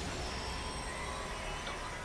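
Sci-fi battle sound effects from an anime soundtrack: a steady rushing, hissing noise over a low rumble.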